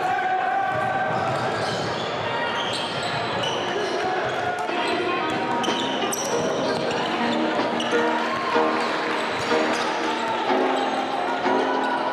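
Live game sound of a basketball game in a gym: a ball bouncing on the hardwood amid players' and spectators' voices, with many short clicks and no deep bass.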